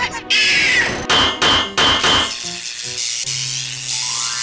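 Cartoon sound effects: a loud burst, then three short, sharp hits in quick succession, each ringing briefly. In the second half they give way to a few short musical notes and a held low note.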